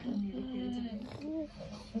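A baby babbling and vocalising without words, in drawn-out sounds that rise and fall in pitch.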